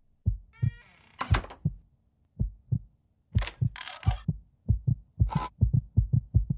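Heartbeat sound effect: low paired thumps that speed up steadily. A short rising squeak comes about a second in, and brief hissing bursts come near the middle.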